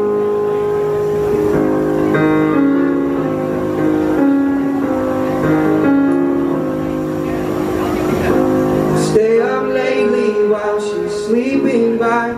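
Solo piano playing a slow song intro of held chords. About nine seconds in, a man's voice starts singing over it.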